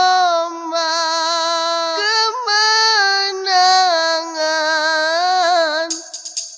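A woman's voice singing the unaccompanied opening phrase of a Kannada film song. She holds long, high notes with slight wavers and small ornamental turns. A tambourine comes in right at the end.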